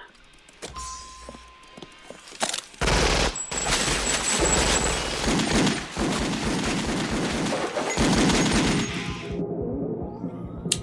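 Film shootout sound effects: a long, rapid barrage of gunfire starts about three seconds in and runs until near the end. A viewer takes the gun sounds to be the sound effects from the video game Doom.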